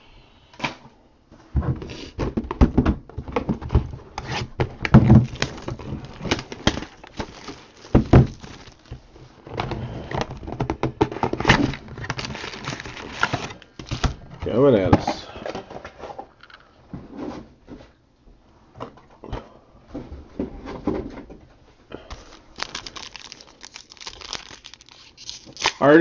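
Trading-card boxes and foil packs being handled and opened by hand: irregular crinkling and tearing of wrappers with scattered clicks and knocks.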